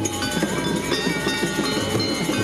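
Balinese gamelan playing for a dance: a fast, dense rhythm of struck bronze keys and small gongs, ringing over one another.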